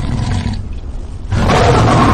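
Lion-roar sound effect from a TikTok Live "Lion" gift animation: a deep, noisy roar that grows louder about a second and a half in.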